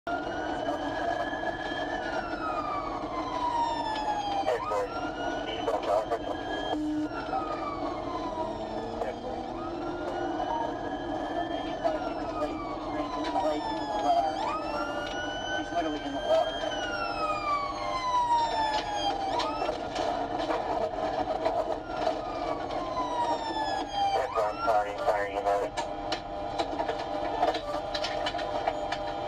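Police car siren wailing through a pursuit. The pitch rises quickly and falls slowly in repeating cycles every four to five seconds, with a few brief, fast yelp sweeps switched in.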